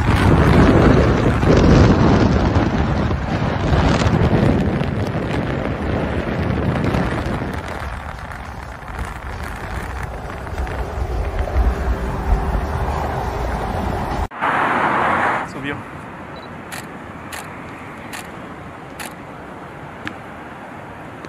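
Wind and road noise from a car travelling at freeway speed, a loud rumbling that cuts off suddenly about 14 seconds in. After a brief louder sound comes a quieter background with several sharp clicks.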